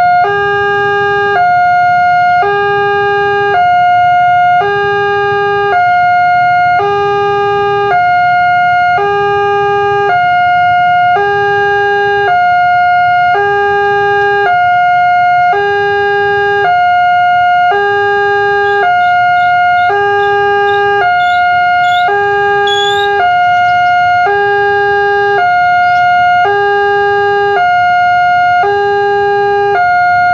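Railway level-crossing alarm sounding from the loudspeaker on the signal pole: an electronic two-tone warning that alternates between a lower and a higher tone, each held about a second, repeating steadily to warn that a train is approaching. A few brief high chirps come in about two-thirds of the way through.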